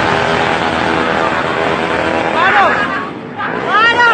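Several motorcycle engines running and revving as a convoy passes, with people's loud shouts rising and falling about two and a half seconds in and again near the end.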